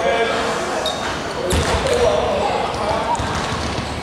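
A basketball thumps once on the hardwood court about a second and a half in, amid indistinct voices echoing in a large gym.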